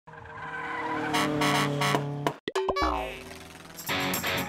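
Car sound effects for an animated title sequence: a steady engine note grows louder for about two seconds, cuts off suddenly with a few clicks, then a falling pitch glide follows. Strummed guitar music starts near the end.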